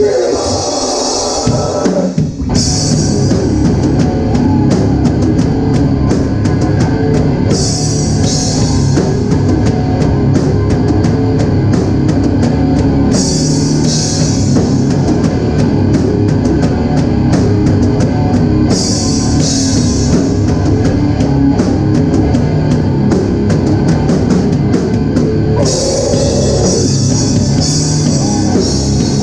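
Hardcore band playing live with distorted guitars, bass and drum kit and no vocals. After a short lead-in and a brief break, the full band comes in about two seconds in, and bright cymbal-heavy stretches return every five or six seconds.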